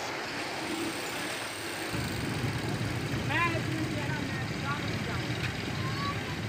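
Millat Express passenger coaches rolling away over the rails: a steady rush of running noise with a low rumble that swells about two seconds in. From about three seconds in, several short rising-and-falling high calls sound over it.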